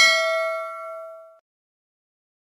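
A bell-like ding sound effect, struck once and ringing out with a fade over about a second and a half: the notification-bell chime of a subscribe-button animation.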